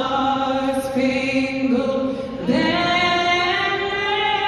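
A woman singing a national anthem solo into a microphone, holding long sustained notes. The voice dips briefly and a new note begins about two and a half seconds in.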